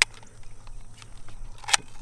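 Faint handling noise from a fish lip grip and handheld scale, with one sharp click near the end as the grip is hooked onto the scale.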